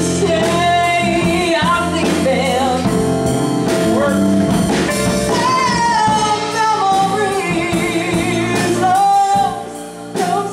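Live soul ballad: a woman's lead vocal holding long, wavering notes, with backing singers, keyboard, bass guitar and drums. The band drops off briefly just before the end.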